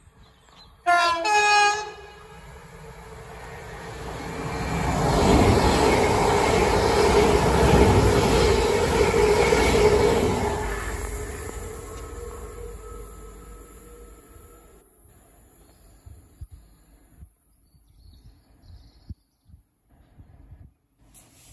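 A two-tone train horn sounds about a second in, a short low note followed by a higher one, from an approaching London Northwestern Railway electric multiple unit. The train then runs through without stopping, its rumble and wheel noise building to a peak and dying away over about ten seconds.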